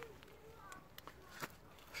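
Near silence with a few faint, soft clicks.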